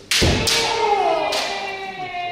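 Kendo strike: a foot stamp on the wooden floor and the sharp crack of a bamboo shinai on armour, with a long shouted kiai that falls in pitch. Another sharp knock comes a little over a second in.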